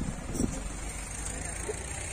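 Outdoor background noise: a steady low rumble with a few faint, brief voices.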